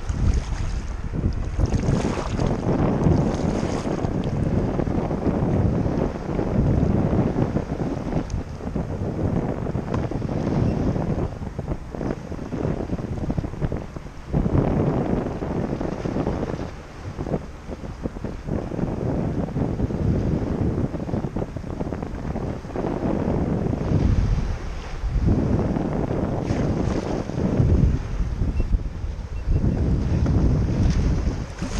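Wind rumbling on the microphone, rising and falling in gusts, over sea water washing and lapping around a kayak.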